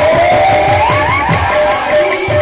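Devotional kirtan music: two-headed hand drums beaten in a quick rhythm, with hand cymbals, under one melody line that slides upward with wavy ornamental turns over a steady held tone.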